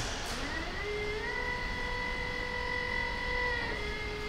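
A mechanical whine that rises in pitch over about a second, holds steady, then dips slightly near the end, over a low rumble.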